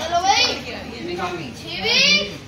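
Children shrieking and shouting excitedly: two loud high-pitched cries, one just after the start and one near the end.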